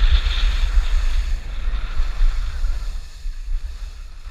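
Gusty wind buffeting the microphone of a camera carried by a downhill skier, with the hiss of skis sliding over snow that eases off about halfway through.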